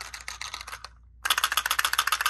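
A small plastic container shaken by hand, rattling in rapid clicks: one burst, a brief pause about a second in, then a louder run of rattling.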